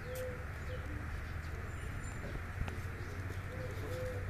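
A bird giving a few short, low calls near the start and again near the end, over a steady low hum.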